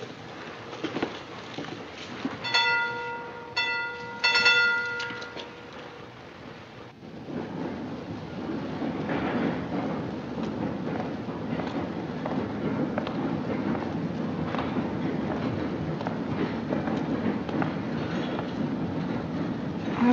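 Steam locomotive whistle, sounding in three blasts about three seconds in, the last one longest. From about seven seconds a train rumbles steadily.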